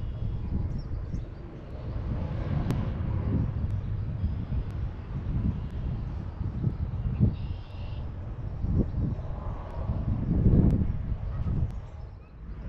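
Outdoor background noise: a low, uneven rumble that swells and fades, with a few faint clicks and a brief higher hiss a little before the eight-second mark.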